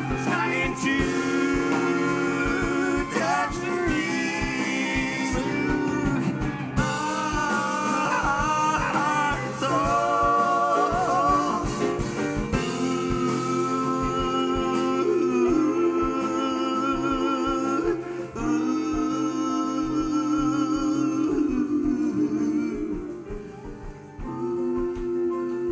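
A live band of piano, drums, electric guitars and upright bass plays under a lead singer and backing vocalists. The held sung notes waver with a wide vibrato, and the sound dips briefly near the end.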